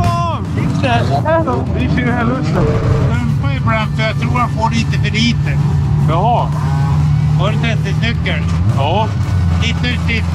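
Indistinct voices talking, over a steady low engine hum that sets in about three seconds in and drops away shortly before the end.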